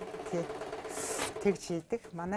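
Sewing machine running in a fast, even stitch for about a second and a half under a woman's speech, with a short hiss about a second in.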